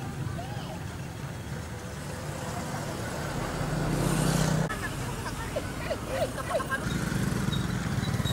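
Street noise of motorbike engines running at low speed close by, with a crowd's voices over them. The engine sound is strongest about four seconds in and breaks off abruptly just after.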